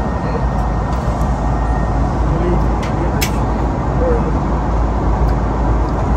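Steady cabin noise of an airliner in flight: an even rush with a deep low rumble underneath.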